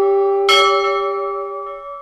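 A bell is struck once about half a second in and rings out, decaying over a held ringing tone that fades away just before the end.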